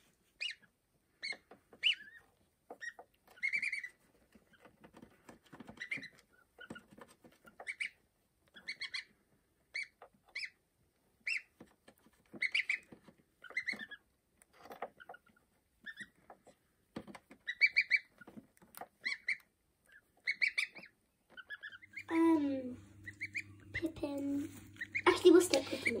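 Newly hatched goslings peeping: short, high chirps repeated irregularly, some in quick pairs. Near the end a low steady hum and voices come in.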